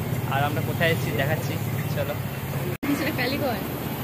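Steady low rumble of street traffic under people talking, with the sound cutting out for an instant near three seconds in.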